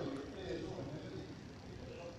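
Indistinct voices talking in a large, echoing hall.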